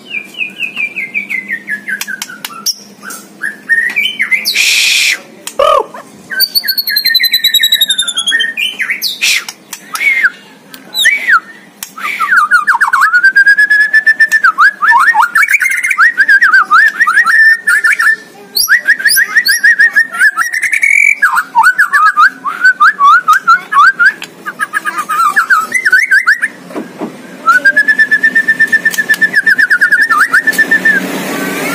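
White-rumped shama (murai batu) singing loudly and without pause, in a varied song packed with imitations of other birds. It opens with a falling whistle, runs into fast, choppy repeated phrases with sharp chips, and ends on a long level whistle.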